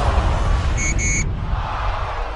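Sound effects of an animated football-themed news sting: a steady rush of noise over a deep rumble, with two short, high beeps close together about a second in.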